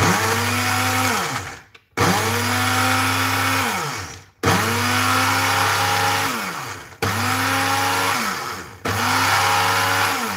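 Small personal smoothie blender run in short pulses grinding dry hazelnut flour finer: about five bursts of around two seconds each. The motor cuts in suddenly and winds down between bursts.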